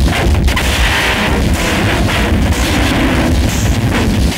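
Harsh noise music: a loud, unbroken wall of distorted low rumble and crackle.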